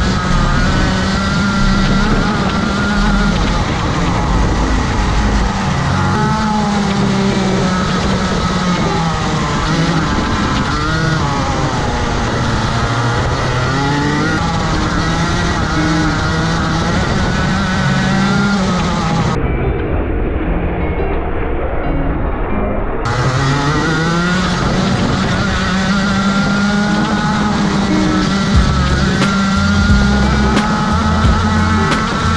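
Onboard sound of a Rotax Max 125cc two-stroke kart engine at racing speed, its pitch climbing as it accelerates and falling off into the corners, over and over. For a few seconds about two-thirds of the way through, the sound goes muffled.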